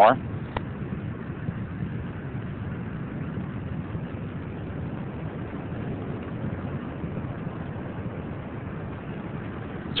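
Space Shuttle Columbia's solid rocket boosters and main engines during ascent: a steady, distant rumble, heaviest in the low end, with a brief click about half a second in.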